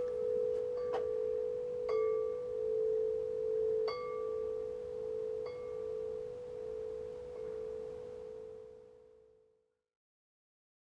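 Large tubular metal wind chime ringing: one sustained low tone, struck again a few times at irregular intervals, slowly fading out near the end.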